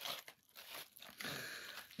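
Faint crinkling and rustling of a foil-lined sandwich wrapper as the sandwich is handled in it: a few soft scrapes near the start, then a quiet continuous rustle in the second half.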